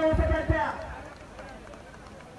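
A man's commentary voice, drawn out and trailing off within the first second over a few low thuds, then only faint background noise.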